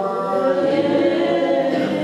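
A choir singing, several voices in harmony holding long notes.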